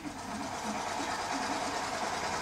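Steady motor-like running sound, a vehicle engine sound effect from a children's cartoon playing on a TV, with faint speech underneath.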